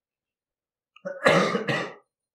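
A man coughing twice in quick succession, starting about a second in.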